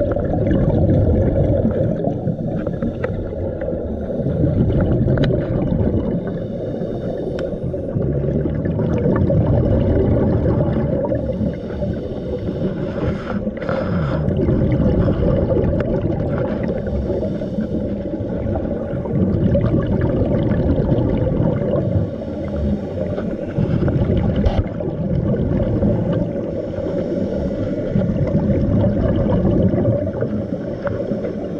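Scuba breathing heard underwater: regulator breaths and exhaled bubbles, a low rushing that swells and eases about every four seconds.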